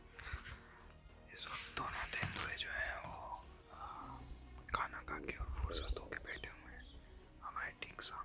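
A man speaking softly in a low whisper, close to the microphone.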